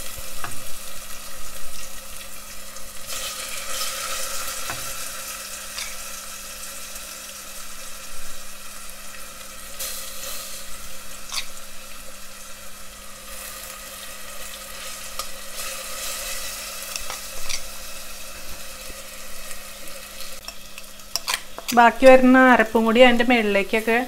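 Sardines and masala paste sizzling in hot oil in a steel pressure cooker, with a few sharp clicks of a spoon against the pot.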